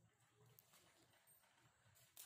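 Near silence: faint room tone with a few light taps.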